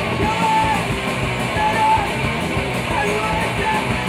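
A punk rock band playing live, electric guitar and drums in a loud, dense mix.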